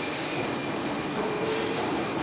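Steady mechanical rumble of heavy machinery running, slowly getting louder, with a faint brief whine about a second in.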